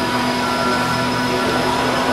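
Steady droning noise with several held tones, unchanging throughout.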